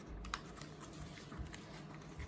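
Faint handling of folded origami paper: a few light clicks and rustles as paper units are tucked into one another.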